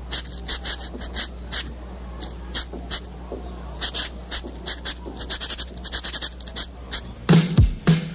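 Short high chirps or clicks repeat irregularly over a low steady hum. About seven seconds in, a reggae band comes in with loud bass notes.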